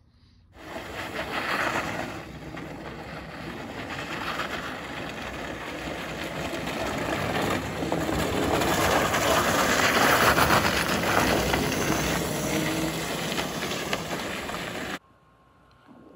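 Electric go-kart, converted with a 3000 W BLDC motor kit, driving across loose gravel: a steady rushing crunch of tyres on gravel that grows louder as the kart comes closer, loudest about ten seconds in, then eases and cuts off suddenly near the end.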